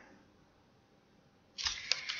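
Dead silence, then about one and a half seconds in a sheet of lined notepaper is handled and rustles, with a light click or two.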